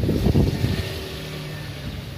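A motor vehicle's engine running close by, loudest at first and easing to a steady low hum.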